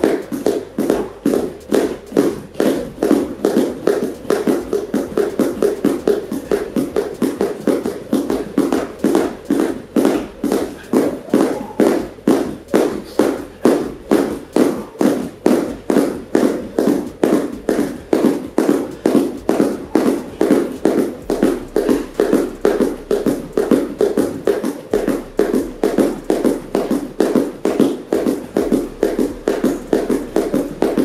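Two people skipping rope barefoot on gym mats: the ropes slapping the mats and feet landing in a steady rhythm of about two to three taps a second.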